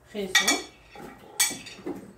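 Metal kitchenware clinking: several sharp clinks with a short metallic ring, the loudest about a third of a second in and another around the middle, as utensils or lids knock against each other or a steel bowl.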